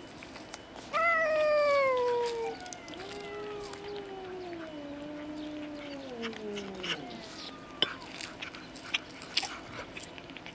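Cat meowing while eating: a loud meow that falls in pitch about a second in, then a longer, lower meow sliding downward for about four seconds. Short chewing clicks follow near the end.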